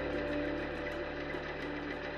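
A machine running steadily: a low hum with a few held tones and a faint, quick, even ticking.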